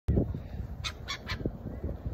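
A flock of gulls calling, with three short squawks close together about a second in, over a low rumble.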